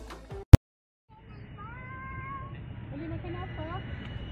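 Background music fades out and is cut off by a single loud click, followed by a second of dead silence. Then outdoor street ambience comes in, with a drawn-out high-pitched call lasting about a second and faint voices.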